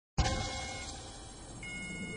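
Film soundtrack: a sudden low hit that fades into a rumble, under steady, high electronic chime tones, the brightest beginning about one and a half seconds in.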